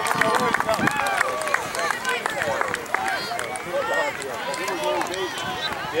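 Several voices of soccer players and sideline spectators shouting and calling over one another across the field.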